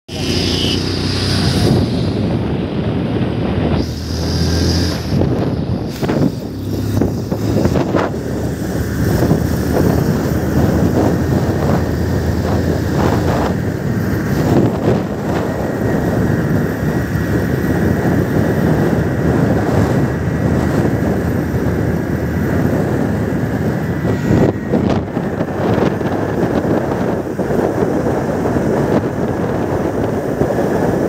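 Motorcycle ridden at speed, heard from the rider's seat: the engine running under way with wind rushing over the microphone. The engine note is clearest in the first few seconds, then a steady wind-and-road roar takes over as speed rises.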